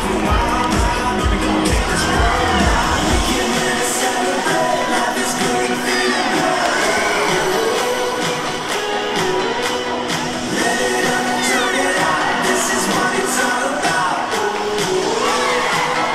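Dolphin show music with singing, over a cheering crowd and shouting children. The deep beat drops out a few seconds in.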